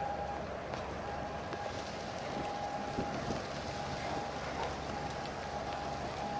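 Steady harbour ambience: an even hiss of wind and water with a faint hum that comes and goes, and a few small ticks.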